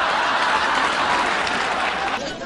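Sitcom studio audience applauding steadily.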